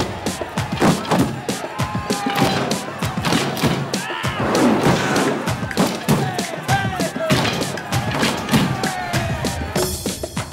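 Group percussion jam: hand drums, drumsticks on drums and wooden objects struck together in a dense, driving rhythm, with voices calling out over it at times.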